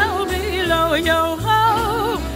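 Music: a singer holding and sliding between notes with a wide vibrato, over a steady low bass line.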